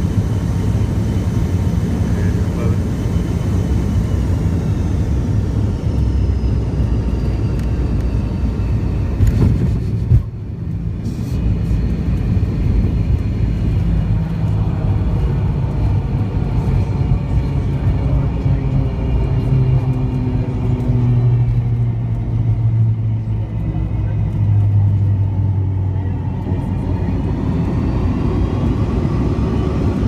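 Jet airliner cabin noise through landing: a steady low rumble of engines and airflow, with a sharp thump or two about nine to ten seconds in as the wheels touch down. It continues as a rolling rumble on the runway, with a rising tone near the end.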